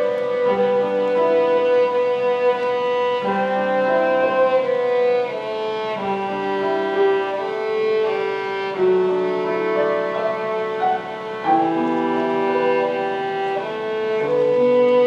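Violin playing a slow melody of held notes over chords from a Yamaha Clavinova digital piano.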